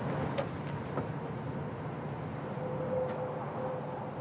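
Steady low outdoor rumble with a few faint clicks, and a faint steady hum in the second half.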